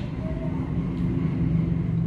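Steady low rumble of background noise, with no speech.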